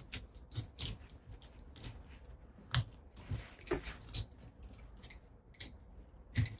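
Box cutter blade scraping and peeling live bark off a Japanese white pine branch: quiet, irregular scratchy clicks as the bark comes away easily.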